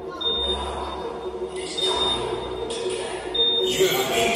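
Several people talking in a large room, with a short high beep repeating about every second and a half.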